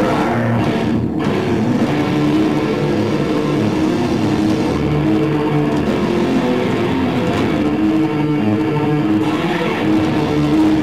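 Live metalcore band playing loud, distorted electric guitars in sustained chords, continuous through the whole stretch.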